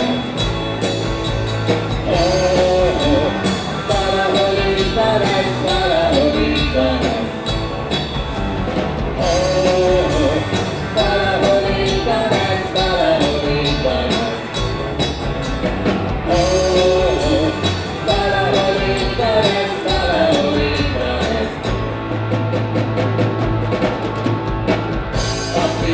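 A live rock band playing a song: electric guitars and a drum kit, with a male lead vocal singing over them.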